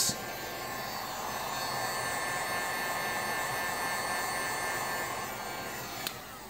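Handheld heat gun running steadily, its fan blowing hot air over hot-glued motor wires to remelt the glue smooth.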